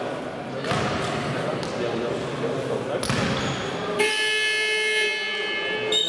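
Basketball game buzzer sounding one steady, even tone for about two seconds, starting about four seconds in and cutting off sharply. Before it, a basketball bounces a few times on the court among voices.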